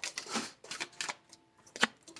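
A deck of oracle cards being shuffled and handled by hand: a few irregular quick snaps and rustles of the cards.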